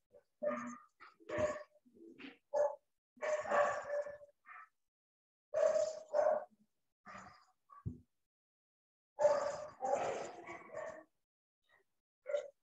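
A dog barking in irregular bursts through a video-call microphone: single short barks alternate with longer runs of barking, with a long run about nine seconds in. The gaps between bursts drop to complete silence.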